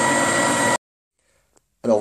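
Electric motor of a vertical slow-masticating juicer running with a steady whine, which cuts off abruptly less than a second in, leaving silence. A voice starts near the end.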